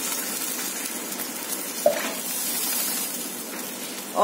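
Water poured from a bowl into a hot non-stick pan of oil-sautéed onions, carrots and peas, sizzling and hissing as it hits the pan. This is the water added for the upma before the semolina goes in. The sound eases off a little toward the end.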